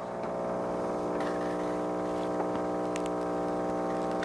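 Pump of a KitchenAid KF8 super-automatic espresso machine running with a steady hum as it brews the second shot, with a couple of faint ticks.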